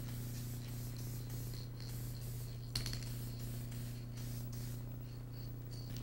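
Aerosol can of sealer spraying onto a set of stained reproduction antlers, a steady hiss with one light click near the middle, over a low steady hum.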